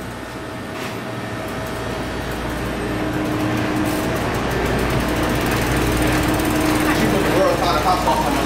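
A steady mechanical whir with a faint hum, growing gradually louder.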